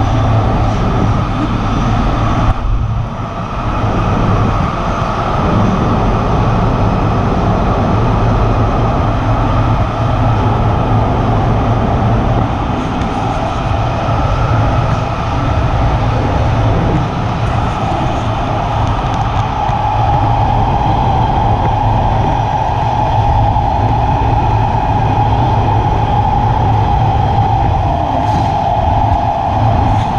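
Los Angeles Metro subway train running through a tunnel, heard from inside the car: a loud, steady rumble, with a steady whine that grows stronger about two-thirds of the way in.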